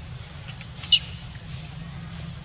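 Infant pig-tailed macaque giving a short, sharp, high-pitched squeak about a second in, with a couple of fainter squeaks just before it, over a steady low rumble.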